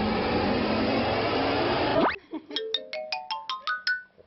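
Comic editing sound effects laid over the picture. First a loud rushing noise for about two seconds that ends in a quick upward sweep. Then a run of about nine short ringing notes, each higher in pitch than the last.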